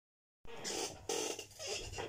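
Three short, soft rustles from hand movement close to the microphone, as the recording starts.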